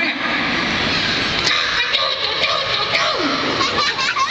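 Live-show audience of children and adults chattering and calling out together in a hall, with a few voices rising and falling above the hubbub.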